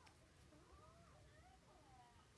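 Near silence: quiet room tone with faint, thin wavering tones that glide up and down.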